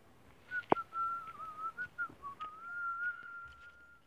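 Human whistling: a single wavering note, mostly level with a few small dips, held for about three and a half seconds. A sharp click sounds just as the whistle begins.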